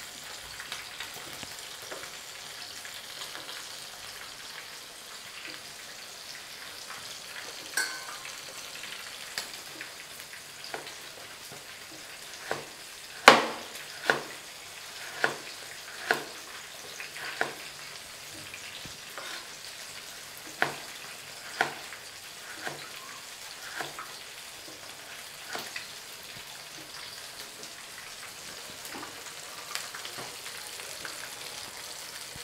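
A whole fish deep-frying in a pan of oil, with a steady sizzle. Knife strokes knock on a wooden cutting board about once a second through the middle, the loudest about 13 seconds in.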